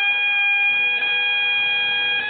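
Highland bagpipes holding one long melody note over the steady drones, with a quick grace note about halfway through.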